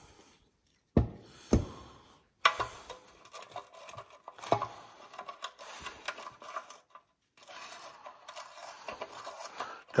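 Metal socket and extension clicking and scraping in the outlet hole of a Honda GX160's steel fuel tank as a new fuel strainer is threaded in by hand. Two sharp clicks about a second in, then faint, irregular ticking and rubbing.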